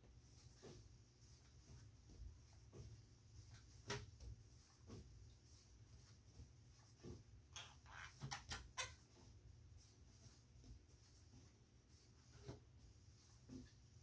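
Near silence: room tone with a steady low hum and a few faint clicks, including a quick run of them about eight seconds in.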